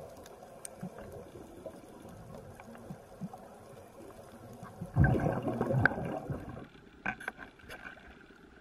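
Seawater sloshing and lapping around a camera held at the surface, then a louder burst of splashing and water streaming off about five seconds in as the camera is lifted out of the sea beside a dive boat. A few sharp knocks follow near the end.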